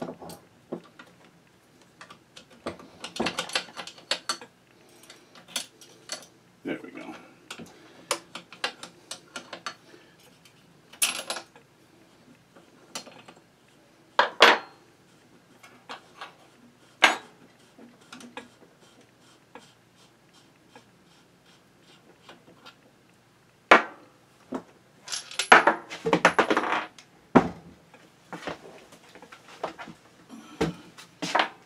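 Steel wrenches and small steel parts of a Singer 127 sewing machine's bottom-end mechanism clinking and clattering as it is unbolted and dismantled on a workbench. The clinks are irregular and scattered, with the busiest clatter a few seconds in and again near the end.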